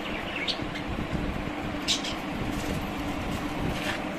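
A few short, high bird chirps in an aviary, about half a second in, at two seconds and near the end, over a steady low mechanical hum.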